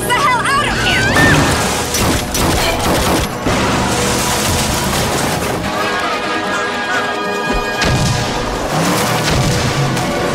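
Action film trailer soundtrack: dramatic music over a dense run of booms, crashes and bursts of gunfire.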